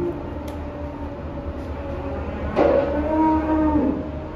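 A Limousin calf mooing once, a single loud call starting about two and a half seconds in and lasting a little over a second, over a steady low mechanical drone from the idling livestock truck.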